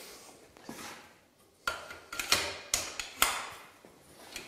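Aluminium scaffold tubes knocking and clinking as a diagonal bracing bar is fitted onto the ladder frame and fastened with its lever clamps. The sound is a few sharp metallic knocks in the second half.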